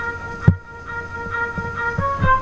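Music playing: several held notes sounding together over low thumps on the beat. The loudest thump comes about half a second in, and the higher notes drop out briefly after it.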